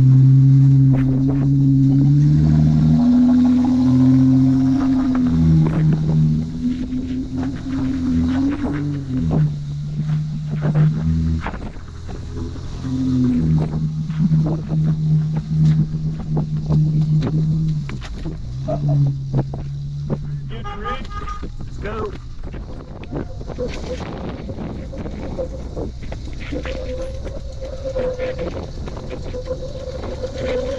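A Jeep Wrangler's engine revving under load in long held bursts, its pitch stepping up and down, as the Jeep crawls up a steep sandstone slot, with scattered knocks throughout. The revving stops after about 18 seconds.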